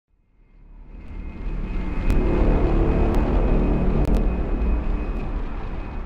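Cinematic logo-intro sound effect: a deep rumbling swell that builds over the first two seconds and slowly fades, with a few sharp cracks about two, three and four seconds in.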